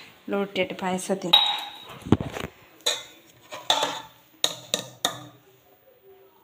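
Stainless steel tumblers and pots clinking and knocking against each other and the counter as they are handled: one loud ringing clink, then a series of sharp knocks and clicks. A voice is heard briefly at the start.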